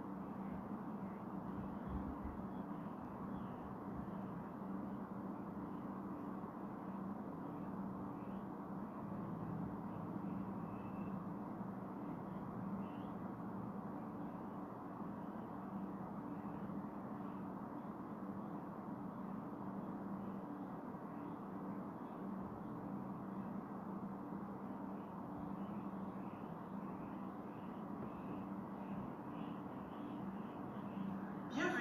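Steady background noise with a constant low hum, and faint, brief high chirps now and then.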